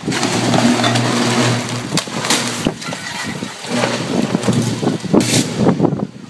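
A downed power line arcing to the ground in a short circuit: a loud crackling electrical buzz over a low hum. It starts suddenly, eases after about two seconds, then flares again near the end.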